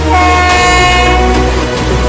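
Vande Bharat Express train horn sounding one steady blast of about a second and a half, over background music with a steady bass.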